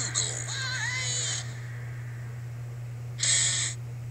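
Trailer soundtrack playing through a TV speaker, recorded off the set, over a steady low hum. In the first second and a half there is hiss with a short whistle-like tone that glides up and down. A brief burst of hiss comes near the end.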